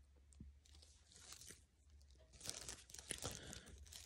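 Faint crunching and chewing close to the mouth, scattered at first and growing denser and louder from a little past halfway.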